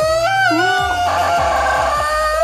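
A man's high, straining voice making loud cries that slide up and down in pitch, rough and harsh in the second half, over background music with a steady bass.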